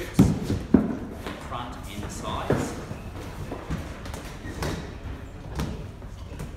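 Two sharp thumps in the first second, then softer knocks and rustling as a large flexible magnetic graphic print is lined up and pressed onto a pop-up counter's frame.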